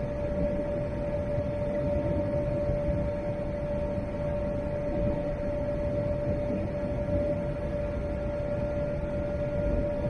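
Steady in-flight cabin noise of a Boeing 787-8 Dreamliner: a low, even rush of airflow with a constant humming tone above it.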